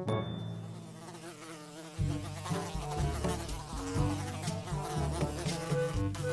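A housefly buzzing, its drone wavering in pitch; it gets louder about two seconds in.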